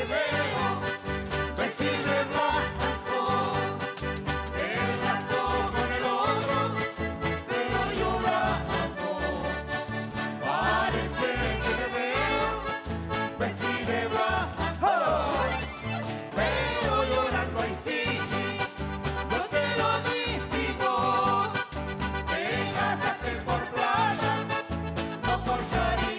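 Live Chilean cueca music from a folk ensemble, with strummed guitars and accordion over a steady, driving beat and voices singing along.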